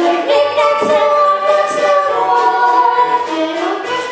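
A chorus of voices singing a stage-musical number, holding long notes through the middle of the phrase.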